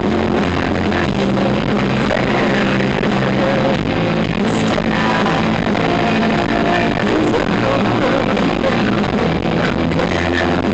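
A grunge band playing loud live rock on electric guitars and bass, heard from within the crowd.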